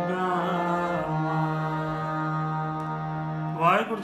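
Harmonium playing the closing phrase of a Sikh shabad in kirtan style, with a man's voice singing over the reeds and bending through the melody before settling onto a long held chord. Right at the end a man starts speaking.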